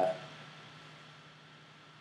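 A pause in a man's speech: his drawn-out 'uh' fades out at the start, leaving faint steady hiss and low hum of room tone.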